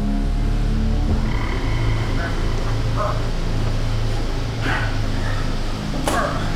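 Background music stops about a second in, giving way to a steady low hum with a few short grunting vocal sounds from a person.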